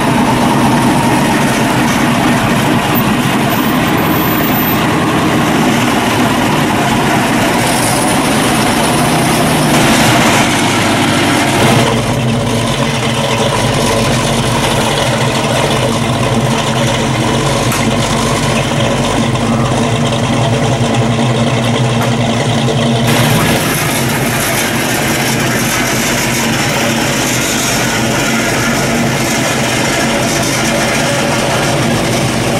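1970 Pontiac GTO's 455 V8 running at idle and low speed, a steady engine note with no hard revving.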